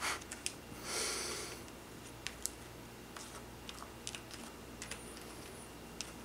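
Faint small clicks and light scraping as fingers press soft candy burger-patty dough down into a thin plastic mold tray, with a brief soft rush of noise about a second in.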